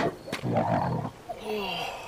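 A man's loud, rough yells and groans, breaking into a falling cry near the end.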